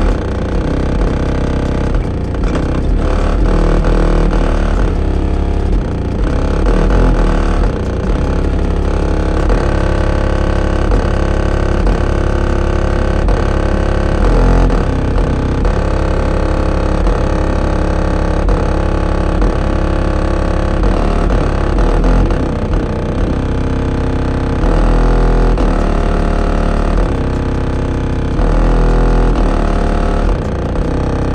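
Bass-heavy music played loud through a car audio system's subwoofers, heard from outside the vehicle, with a deep bass line changing notes throughout.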